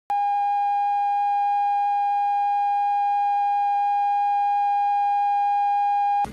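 Steady line-up test tone from a videotape's colour-bars leader: one unwavering high-pitched tone with faint overtones, starting just after the beginning and held at constant level.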